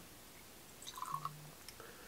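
Whiskey poured from a glass bottle into a small tasting glass: a faint, brief gurgle of liquid about a second in.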